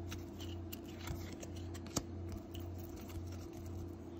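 1998 Bowman baseball cards being slid off a hand-held stack one at a time, making faint card-on-card scrapes and light clicks, with one sharper click about two seconds in. A steady low hum runs underneath.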